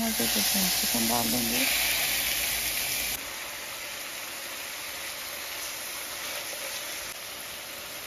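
Raw chicken strips sizzling in hot oil in a non-stick frying pan. The sizzle is loud for about the first three seconds, then drops suddenly to a softer, steady sizzle.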